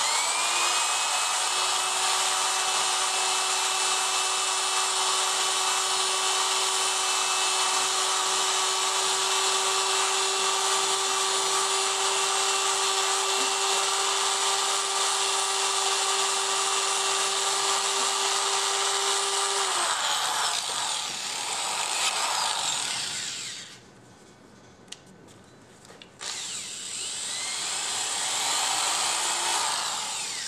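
Electric right-angle drill spinning a foam-backed sanding disc against maple and mahogany turning on a wood lathe, a steady high whine with a sanding hiss as it comes up to speed. About twenty seconds in, the whine drops and stops. The noise dies away to near quiet for a couple of seconds, then a shorter run of sanding noise comes near the end.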